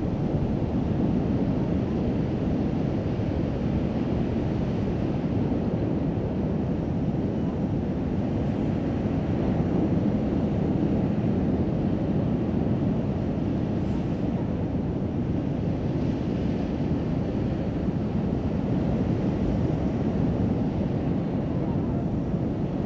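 A steady low rumbling noise with no pitch and no rhythm, unchanging throughout.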